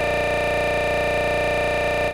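A loud, steady electronic buzz with many overtones, unchanging throughout.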